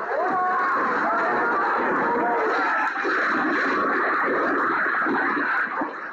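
Many people shouting and screaming at once, loud and unbroken, as a building collapses in front of them.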